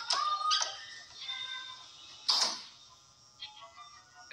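Film soundtrack music: several sustained held tones, with a brief rush of noise about two seconds in.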